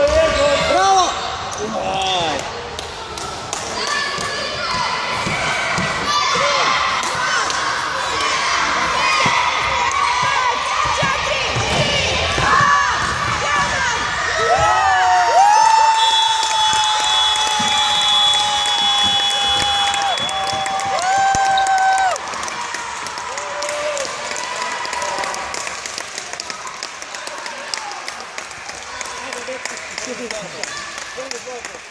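Spectators' voices shouting during play in a sports hall. Then an electronic scoreboard horn sounds one long blast of about four seconds, followed by two short blasts: the signal for the end of the match.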